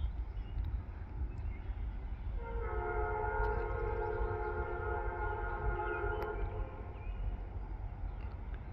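Freight locomotive's multi-chime air horn sounding one long blast of several steady notes together, starting a little over two seconds in and lasting about four seconds, over a steady low rumble.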